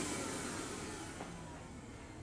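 Air track's blower winding down, its steady rushing hiss fading away over the two seconds.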